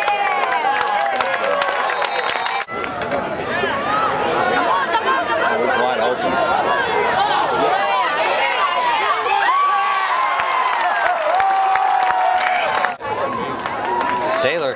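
Football crowd in the stands shouting and cheering during a play, many voices overlapping. There are two brief drops, about three seconds in and near the end.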